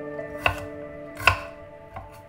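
Chef's knife chopping garlic on a wooden cutting board: two sharp knocks of the blade about a second apart, over soft background music.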